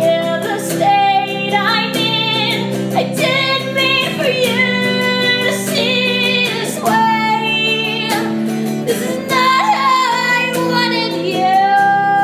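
Song: a woman singing a slow, sustained vocal line over acoustic guitar.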